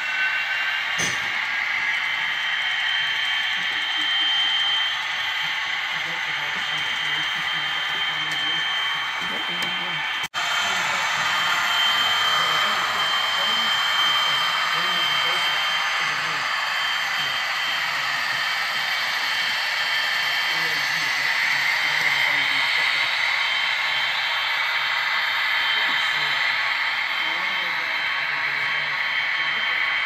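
HO-scale model train, Union Pacific DDA40X diesels hauling a long string of hopper cars, running steadily around a layout helix: a continuous whir of metal wheels on rail and small motors, with indistinct voices in the background.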